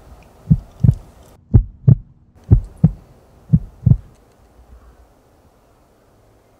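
Heartbeat sound effect: slow double lub-dub thumps about once a second, four beats, stopping about four seconds in.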